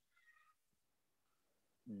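Near silence, with a faint, brief high-pitched call about a quarter second in.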